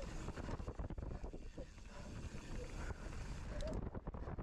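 Wind buffeting the camera microphone over the rumble of knobby tyres on dirt and leaves, as a downhill mountain bike descends fast with a steady clatter of small rattles and knocks from the bike over the rough trail.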